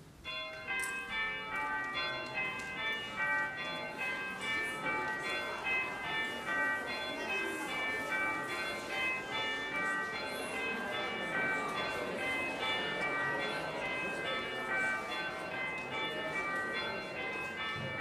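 Church bells ringing a quick, steady succession of notes, starting suddenly, over the murmur of a congregation chatting as it leaves.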